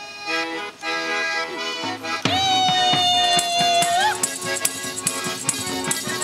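Ukrainian folk instrumental interlude: an accordion plays held chords and a tune over a steady ticking beat of light hand percussion. About two seconds in, a long high note is held for nearly two seconds and ends in a short upward slide.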